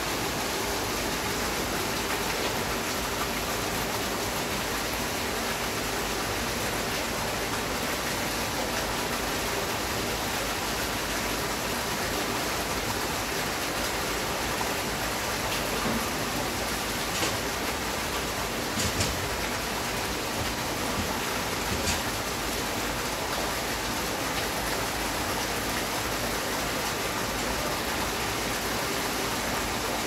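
Steady rushing noise of running water, with a few faint clicks in the second half.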